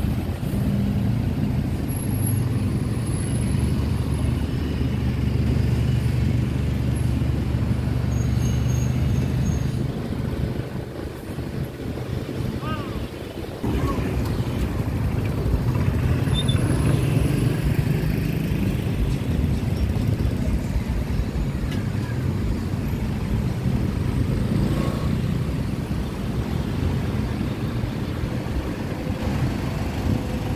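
Road traffic passing close: engines of motorbikes, minivans and taxis running on the street, with a heavy low engine drone for the first ten seconds, a short lull, then engine noise rising again.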